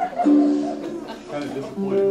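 Live acoustic band music: ukulele playing alongside held, steady melody notes. A voice is also heard.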